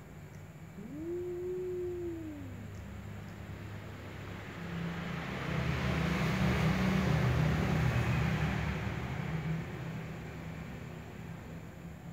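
A cat gives one long, low meow that rises and then falls in pitch, starting about a second in. Later, a louder rushing noise swells and fades over several seconds in the middle.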